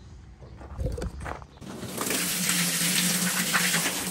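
Water from a garden hose pouring into an empty steel sealcoat tank. It is a steady splashing rush that starts about one and a half seconds in, with a low hum under it.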